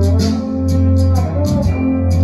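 Instrumental break of a country backing track: guitar lines over a steady bass and drum beat, with no singing.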